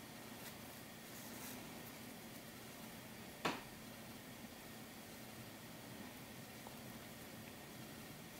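Faint room hiss with quiet handling of the work while sewing by hand, and one short click about three and a half seconds in.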